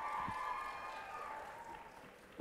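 Faint audience applause with a few held cheers, fading away towards the end.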